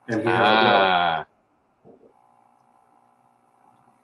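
A man's voice holding one drawn-out, wavering vowel for about a second, a wordless sound rather than speech; the rest is near silence.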